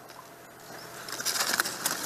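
A soft rustling hiss that grows louder through the second half.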